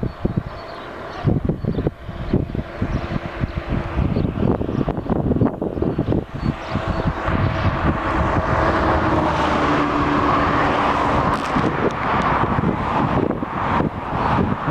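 Wind buffeting the microphone beside a road, with a passing motor vehicle's engine and tyre noise building through the second half.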